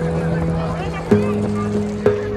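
Background music: held chords that change with a sharp attack about once a second.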